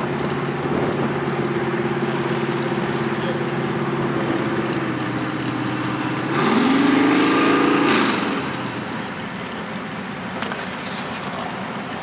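Off-road buggy's engine running steadily at low speed, then revving up sharply about halfway through, holding the higher pitch for a couple of seconds and easing back off to a quieter run.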